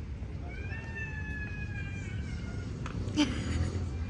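A cat meowing: one long drawn-out meow that rises briefly, then slowly falls, lasting about two seconds. A sharp click comes a little after three seconds in, over a steady low outdoor rumble.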